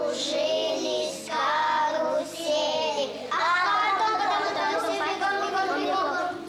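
Young children singing, with held, wavering notes.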